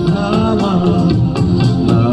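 Live band music through a PA system: a man singing a melody over keyboards and a steady electronic drum beat.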